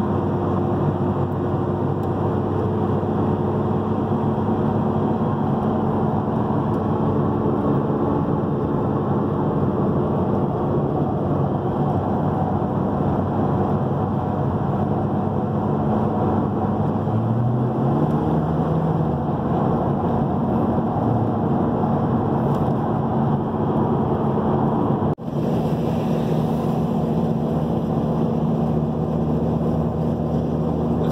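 In-cabin drone of a 2006 Ford Mustang's 4.0-litre V6 at highway cruise, mixed with steady road and wind noise. The engine note steps up in pitch a little past halfway and holds there, and the sound drops out for an instant near the end.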